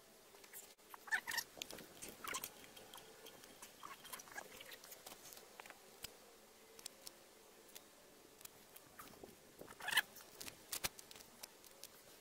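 Faint scattered clicks and light scratchy scrapes of hand work on a threaded steel bar and a resin cartridge, with louder clusters about a second in, around two seconds in, and near ten seconds.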